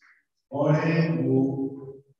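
A priest's voice chanting a short liturgical phrase into a microphone, starting about half a second in and held on steady notes for about a second and a half.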